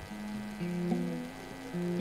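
Soft live instrumental music on keyboard and electric guitar: held chords that change about once a second, over a steady electrical mains hum.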